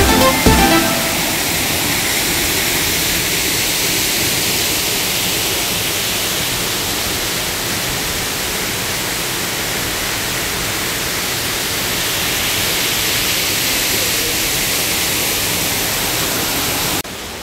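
Steady rush of a waterfall and the rocky stream below it, water pouring and splashing over boulders. A piece of electronic dance music ends within the first second.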